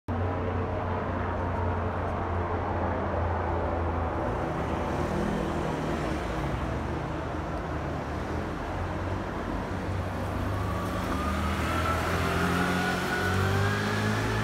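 Steady rumble of city street traffic. Near the end an engine note rises in pitch.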